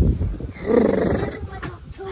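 A man's low, growling groan from the cold, lasting under a second, about half a second in. It follows a brief low rumble on the microphone at the start.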